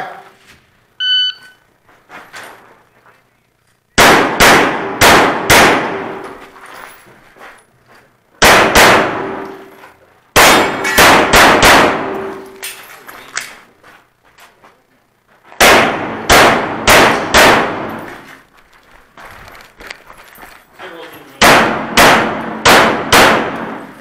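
A shot timer's short start beep about a second in, then a handgun fired in five quick strings of about three to six shots each, with pauses between strings. Each shot echoes in an enclosed indoor range bay.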